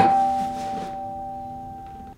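A guitar chord plucked once, its few notes ringing together and slowly fading.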